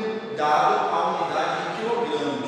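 A man speaking in Portuguese, with drawn-out vowels.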